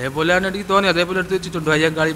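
A man speaking Malayalam into a handheld microphone, in a run of short phrases: speech only.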